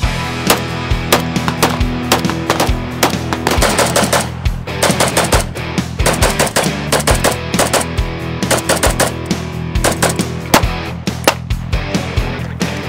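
Semi-automatic rifles firing in quick irregular strings of shots, first an HK91-pattern rifle and then an AK-pattern rifle, mixed with background music.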